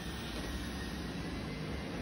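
Roborock E4 robot vacuum running steadily on a rug, its suction fan at the higher power it switches to automatically on carpet.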